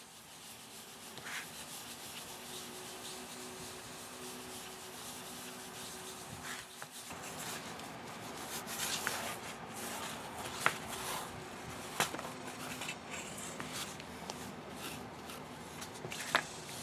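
Synthetic wool applicator pad rubbing leather dye into a tooled veg-tan leather holster in circular strokes: a steady soft, scratchy rubbing that grows busier in the second half, with a couple of sharp ticks about two-thirds of the way through.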